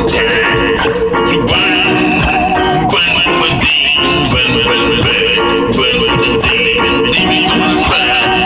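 Loud music with percussion hits and a wavering, vibrato-like melody line held over a dense, steady mix.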